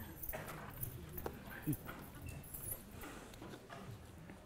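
Footsteps going up lecture-hall stairs amid scattered audience murmur, with a short falling vocal sound a little under two seconds in.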